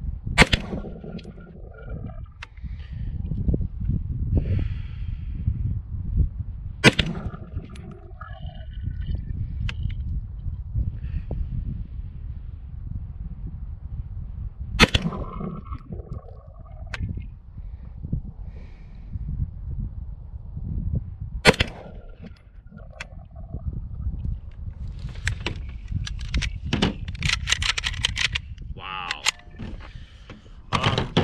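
HK SP5 9mm carbine fired four single, deliberate shots several seconds apart, each a sharp crack: slow zeroing shots for the iron sights. A run of clicks and rattles near the end as the gun is handled off the rest.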